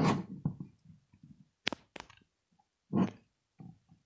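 Hands handling a small plastic Campark 4K action camera: two sharp clicks close together a little before the middle, with short rustling bursts at the start and about three seconds in.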